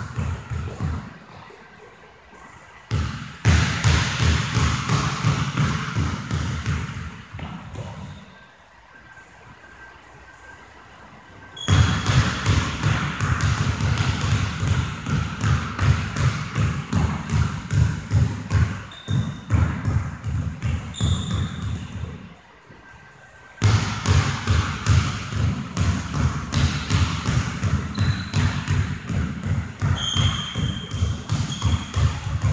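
Basketball game on a hardwood gym floor: a ball bouncing, rapid footfalls and short sneaker squeaks, in busy runs broken by a few quieter lulls.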